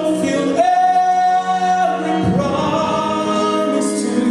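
Gospel choir singing with electronic keyboard accompaniment, holding one long chord from about half a second in and another starting just after two seconds.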